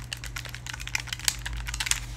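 Nintendo Switch Joy-Con buttons clicking rapidly and irregularly as a game is played, over a low steady hum.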